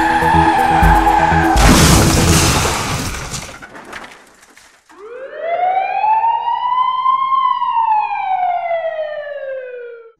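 A loud, noisy crash that fades out over about two seconds, then, after a short silence, a siren winding up quickly and falling slowly in one long wail.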